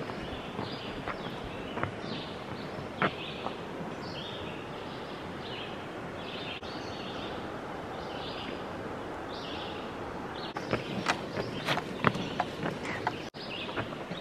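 Outdoor ambience: a steady rushing hiss with a bird repeating short high calls, and a quick run of sharp footfalls or knocks in the last few seconds.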